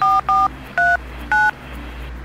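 Touch-tone dialing beeps from a smartphone keypad as a number is entered: four short beeps, each two tones sounding together, two quick ones and then two more spaced out, over the first second and a half.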